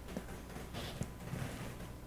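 A few faint footsteps of a child walking on a carpeted floor over quiet room tone.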